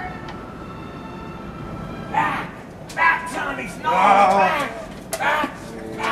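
Wordless human vocal sounds: several drawn-out cries or moans with wavering pitch, starting about two seconds in, with a few sharp clicks between them.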